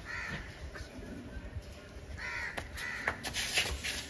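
Rottweiler puppy barking at a person's hands in play: two hoarse yaps, one at the start and a longer one about two seconds in, followed by a few sharp clicks.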